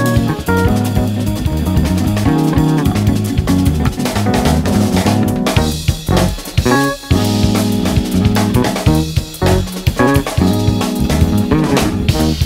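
Instrumental jazz track with a drum-kit and bass groove under electric keyboard, with short breaks in the groove near the middle.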